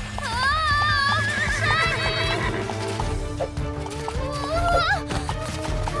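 Cartoon background music with high, wavering, gliding cries over it and a pony's hoofbeats ticking along in the mix.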